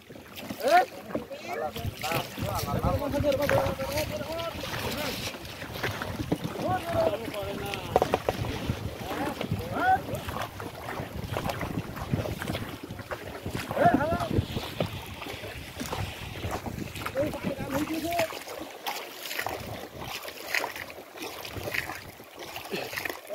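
Wooden fishing boat being rowed with bamboo oars: irregular knocks of the oars on the hull and water, with wind on the microphone.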